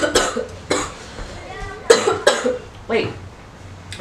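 A woman coughing several times in short, sharp bursts into her fist.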